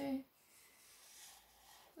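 Thick black felt-tip marker drawn across paper: a faint, soft scratchy stroke about a second in, after the spoken count "two".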